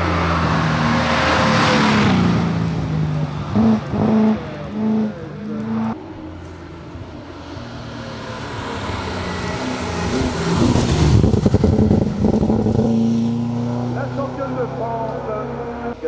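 Mercedes 500 SLC Group 2 race car's V8 engine running hard up a hillclimb, its revs rising and falling in steps as it changes gear and lifts for the bends. It is loudest about eleven seconds in, as the car comes close.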